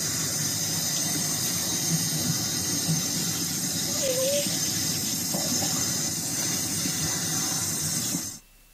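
Tap water running steadily into a stainless steel sink during a puppy's bath, with one short wavering squeak about four seconds in.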